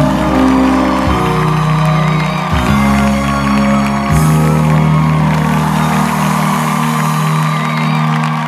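Instrumental passage of a ballad's backing track with no singing: sustained chords that change every second or so, then one long chord held and fading near the end.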